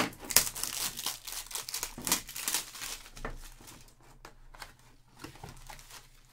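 Clear plastic wrapping on a sealed trading-card box being torn and crinkled off by hand. The crackling is dense and loud for the first few seconds, then thins out to scattered, quieter crinkles.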